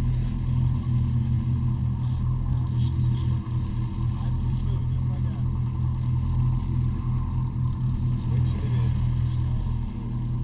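A sportfishing boat's inboard engines running steadily under way, a loud, even low drone. Faint voices come in near the end.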